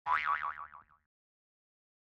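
A cartoon 'boing' spring sound effect: a tone wobbling quickly up and down about six times, dying away within about a second.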